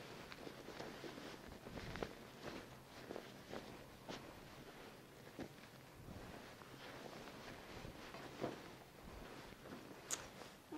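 Faint, irregular rustling of cloth with soft scattered knocks as a bath blanket and bed sheets are pulled off and handled on a hospital bed.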